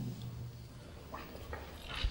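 A few faint, short scrapes of chalk on a blackboard, about a second in and again shortly after, over a low steady room background.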